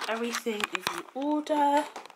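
A woman's voice close to the microphone, speaking in short untranscribed phrases, with a few small clicks about halfway through.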